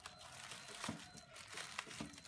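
Plastic courier mailer and the clear plastic wrap inside crinkling as hands pull the bag open, with a couple of sharper crackles.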